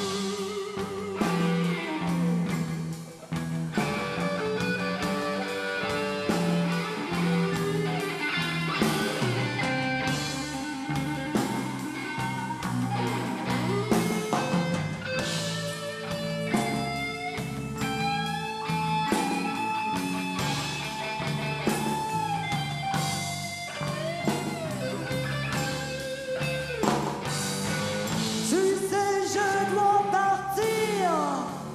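Live blues band playing: electric guitars, saxophone, bass and drums, with a woman singing into a handheld microphone.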